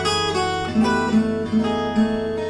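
Cort Gold O6 acoustic guitar, capoed, played with the fingers: chord tones plucked one after another, about four fresh attacks in two seconds, each left ringing.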